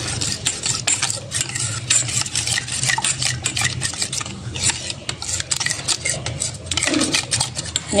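Metal spoon stirring a thin flour-and-water batter in a stainless steel bowl, with many light, irregular clicks and scrapes of the spoon against the bowl.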